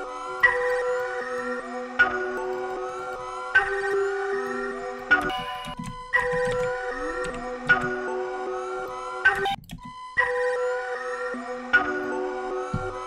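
Software-synth melody from the Omnisphere plugin playing back in a loop: a short phrase of held notes, each with a sharp attack, repeating over and over. It cuts out briefly about ten seconds in, then starts again.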